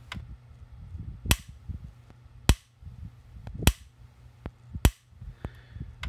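PEL 609 electric fence charger's high-voltage pulses arcing from a test wire held in pliers to its output terminal: four sharp spark snaps, evenly spaced about 1.2 seconds apart. The freshly repaired unit is firing normally and throws a strong spark.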